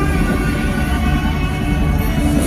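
Loud live concert music over the PA: a droning intro with held tones over a heavy low rumble.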